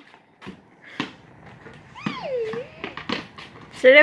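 A small rubber toy basketball bouncing on a concrete driveway, two sharp knocks in the first second and a few more near the end. A child's voice is heard about two seconds in, and laughter begins just before the end.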